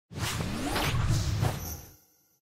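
Title-card whoosh sound effect: a few swelling whooshes with rising sweeps, ending in a high shimmering tone that fades out right at the end.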